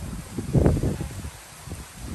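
Wind gusting on the microphone with leaves rustling: one gust about half a second in, then it eases off.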